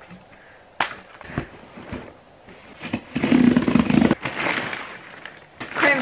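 Cardboard box and packaging rustling and scraping as a parcel is rummaged through, with a couple of sharp clicks about a second in and the loudest rustling about three seconds in.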